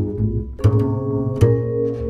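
Jazz duo of plucked upright double bass and vibraphone: two new bass notes sound about half a second and a second and a half in, with sustained vibraphone tones ringing above them.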